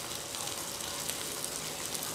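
Log fire burning with waste engine oil on it: a steady sizzling hiss with scattered small crackles.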